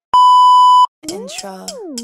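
TV test-card bleep: one steady, slightly buzzy tone lasting under a second, cut off sharply. About a second in, music with sliding, swooping synth notes and light clicks begins.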